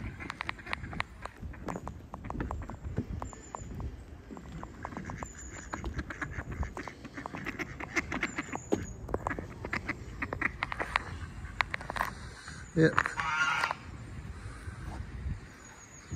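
Mallard ducks quacking on the water, among many short clicks and taps, with a few faint high chirps.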